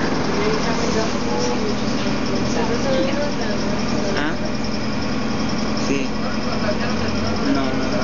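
Diesel engine of an airport apron shuttle bus running steadily as the bus drives across the ramp, with passengers' voices talking over it.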